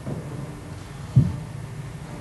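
A single dull, low thump about a second in, sharp at the start and brief.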